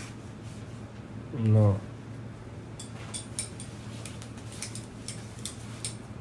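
A single short, low vocal sound about a second and a half in, rising then falling in pitch. It is followed by a scatter of faint light clicks and rustles.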